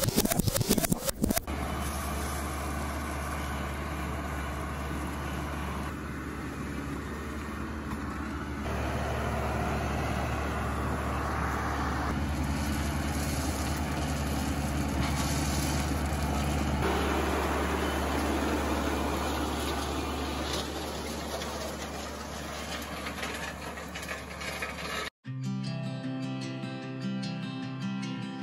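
Tractor engine running steadily with a deep, even hum. Near the end it cuts off abruptly and acoustic guitar music begins.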